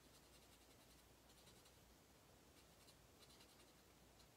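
Faint scratching of a Stampin' Blends alcohol marker's tip on cardstock as an owl image is coloured in, in four short bouts of quick strokes.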